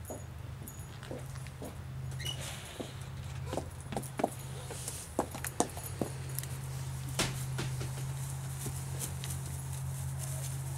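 Footsteps and scattered knocks of someone running outdoors, picked up close by the camera microphone, over a steady low hum.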